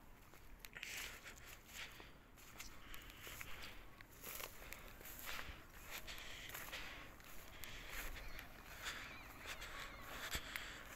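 Faint footsteps swishing through dew-wet grass and young wheat, in irregular soft bursts with a few light ticks.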